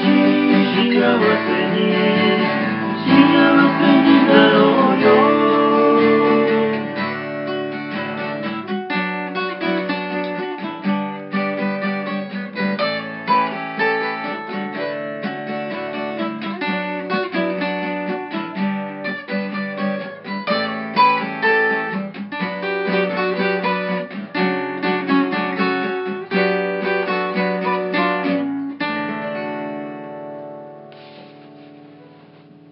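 Acoustic guitar strummed in a Japanese folk song, with singing over it for roughly the first six seconds; after that the guitar carries on alone and dies away near the end.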